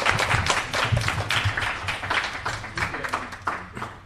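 Audience applauding, a dense run of claps that fades out near the end.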